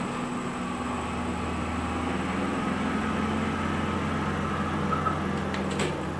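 Steady low mechanical hum, with a few faint clicks near the end.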